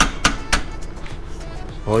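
Hand tools clicking and clinking against metal while the exhaust fittings of a motorcycle are tightened: three sharp clicks in the first half second, then quieter handling.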